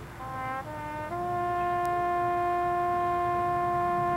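High school marching band's brass playing a short phrase of notes, then holding one long, loud note from about a second in.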